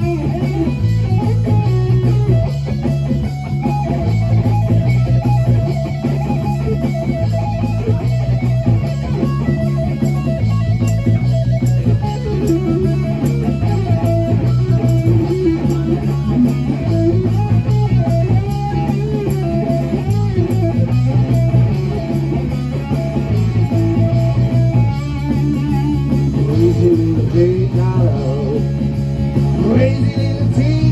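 Live band playing an instrumental passage: an electric guitar plays a melodic line over a bass line that steps back and forth between two notes.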